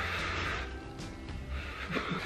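Breath blown on a forkful of hot instant vermicelli to cool it, a soft breathy rush in the first second fading to quieter puffs. Quiet background music plays underneath.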